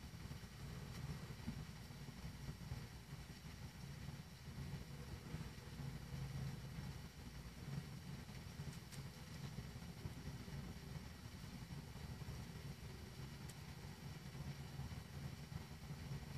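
Faint, steady low hum with light hiss above it, and no distinct events.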